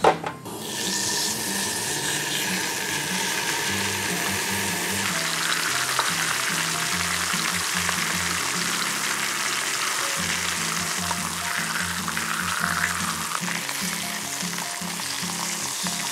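Seasoned pork shoulder loin slices sizzling in olive oil in a hot frying pan over medium-high heat; the sizzle starts about half a second in as the meat goes into the pan and then holds steady.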